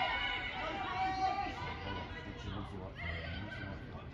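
Distant high-pitched voices calling out across an open football pitch during play, over a steady outdoor background noise.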